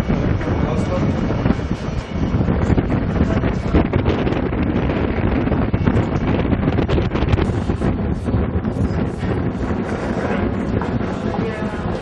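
Wind buffeting the camera's microphone: a loud, steady rushing with a deep rumble underneath.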